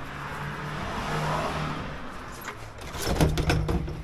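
High-pressure sewer-jetting hose being pulled off the jetter's drum reel by hand: a rubbing rustle that turns into louder clattering and scraping about three seconds in. A steady low engine hum runs underneath.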